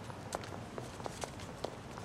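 Footsteps of hard-soled shoes clicking on pavement at an even walking pace, about two steps a second, over a low steady street hum.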